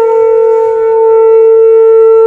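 Conch shell (shankha) blown in one long, loud, steady note that holds its pitch.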